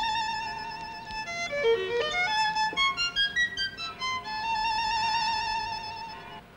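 Background music: an unaccompanied solo violin playing a slow melody with vibrato. It holds a long note, runs through a quick passage of short notes in the middle, then settles on another long held note.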